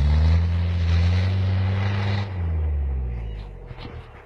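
A 4x4's engine pulls hard up a deep snow track. Its note climbs slightly, drops off about two seconds in, then fades as the vehicle moves away.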